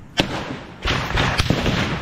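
Gunfire at night: one sharp shot about a fifth of a second in, then a quick cluster of four or five shots about a second in, each followed by an echoing tail.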